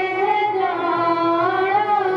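A woman singing a devotional song into a microphone, holding long notes that bend slowly in pitch.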